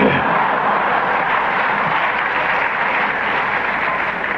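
A hall audience laughing and applauding at a joke, a steady, dense wash of clapping and laughter.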